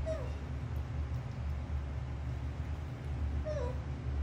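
Baby macaque giving two short, high squeaks that dip in pitch, one at the start and another about three and a half seconds later, over a steady low hum.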